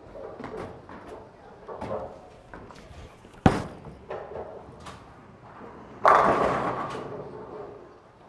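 A bowling ball being released onto the lane, landing with one sharp thud about three and a half seconds in, then rolling quietly down the lane. About two and a half seconds later the pins crash loudly, and the clatter dies away over the next two seconds.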